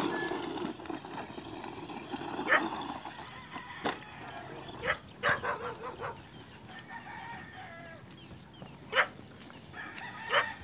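HSP Brontosaurus RC monster truck's electric motor and tyres running on dirt, loudest at the start and fading over the first few seconds, with several sharp knocks and clicks later on.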